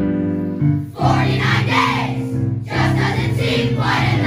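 A large group of boys singing a song together in chorus over an instrumental accompaniment. The accompaniment's held notes sound alone at first, and the massed voices come in strongly about a second in.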